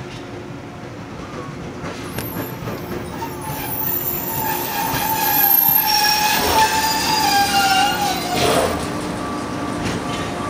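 Steel wheels of a JR 107 series electric train squealing on the rails as it creeps slowly into the train-washing machine. A wavering high squeal comes in about two and a half seconds in, grows louder through the middle and slides down in pitch near the end.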